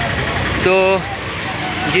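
A man speaking Bengali, drawing out one short word, over steady outdoor street noise with vehicles about.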